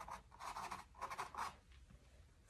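Paintbrush stroking acrylic paint onto a canvas: a few faint, quick strokes in two short runs, softening the paint.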